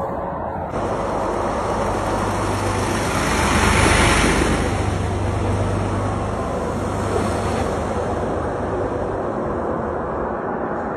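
Steady rushing outdoor noise, wind on the phone microphone mixed with road traffic, with a low rumble underneath. It swells briefly about four seconds in.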